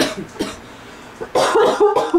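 A woman crying, breaking down in short, choked, cough-like sobs; the longest and loudest comes about a second and a half in.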